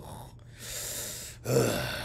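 A person's breathy exhale lasting about a second, followed by a short grunt, the kind of breath let out while stifling a laugh.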